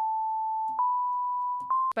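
Ableton Live's Wavetable synth playing a pure sine tone, one note after another, each a step higher in pitch. A faint click marks each note change, and the last note cuts off just before the end.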